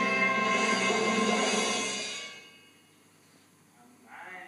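Orchestra playing a sustained chord that fades away about two seconds in, leaving near silence.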